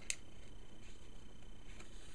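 Faint rustling as ribbon is threaded through a punched hole in a paper treat box, with one sharp click just after the start.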